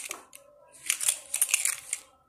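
Handling noise from a small die-cast metal toy truck being turned over in the hands on a cloth: a brief rustle, then a string of short scratchy rubbing and clicking sounds about a second in.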